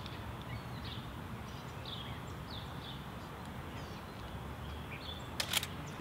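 Small birds chirping over a steady low outdoor rumble, in short falling chirps about once a second. Near the end, a sharp double click of a Mamiya RB67 medium-format camera's shutter firing.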